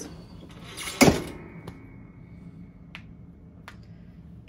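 Clamshell heat press being clamped shut: a loud metal clunk about a second in as the upper platen locks down, with a short ringing after it, then a couple of light clicks.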